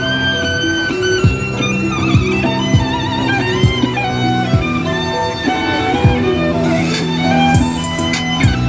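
Amplified electric violin playing a melody of long held and sliding notes over a backing track with a steady kick-drum beat about once a second.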